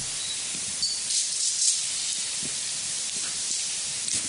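Steady hiss of the recording's background noise in a lull between questions, with a few brief louder noises between about one and two seconds in.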